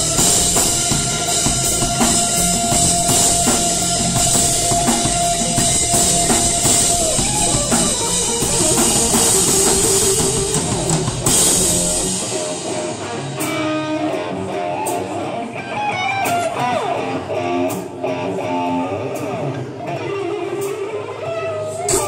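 Live rock band playing: electric guitar over a drum kit, with a long held guitar note in the first several seconds. About halfway through the deep bass drops out, leaving guitar lines and scattered cymbal and drum hits.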